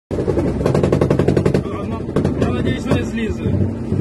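An armoured vehicle's PKT machine gun fires a rapid burst of about a dozen shots a second, lasting about a second and a half, followed by a couple of single shots. A steady engine drone runs underneath.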